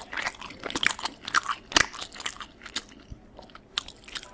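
Chewing a mouthful of chicken alfredo pasta, heard as a dense run of irregular mouth clicks and smacks.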